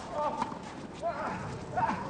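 Tennis rally on clay: a racket striking the ball about half a second in, with short voiced cries around the shot and again near the end.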